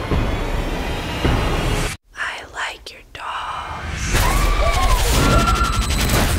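Horror trailer sound design: a dense low rumble cuts off suddenly about two seconds in, leaving a moment of quiet with faint whispery sounds. It then builds again into a loud swell with a wavering, wailing tone.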